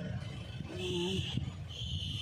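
Birds calling, short high calls repeating about once a second, over a low rumble.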